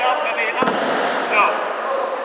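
Voices talking in a large hall, with one sharp slap or bang about two-thirds of a second in that rings briefly in the room.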